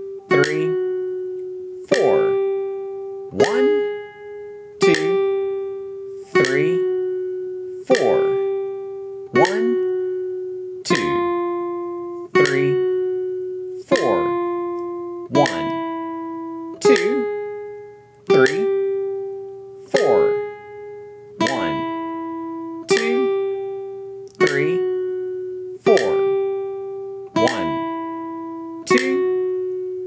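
Nylon-string classical guitar playing a slow sight-reading exercise: single plucked notes, one on each beat at 40 beats per minute (about one every second and a half), each ringing on until the next, the pitch moving up and down between a few neighbouring notes.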